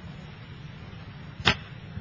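Low steady room hum with a single short, sharp click about one and a half seconds in.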